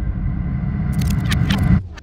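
A deep rumble with a quick run of sharp clicks and scrapes in its second half, cut off suddenly just before the end.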